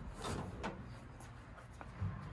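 Faint rubbing and handling sounds of nylon cord being worked as a loop is hooked onto an anchor point, with a few light ticks.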